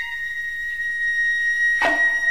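Enka song intro: a flute holds one long high note, with a single percussion hit near the end.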